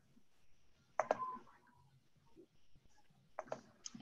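A few faint computer clicks over quiet room tone: one about a second in and a quick cluster near the end.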